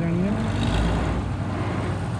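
Diesel engine of a Vishal combine harvester running steadily as the machine drives off, a continuous low rumble.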